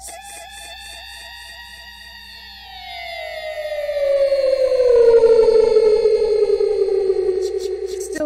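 A siren-like tone with many overtones warbles about three times a second, then glides slowly down in pitch while growing louder, and cuts off near the end.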